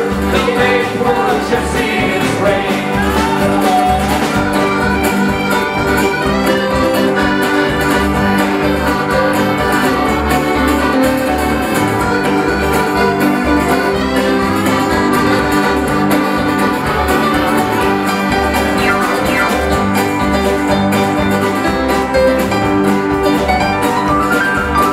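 Live folk band's instrumental break led by accordion, over strummed acoustic guitars, upright bass and a steady beat, with fiddle also playing.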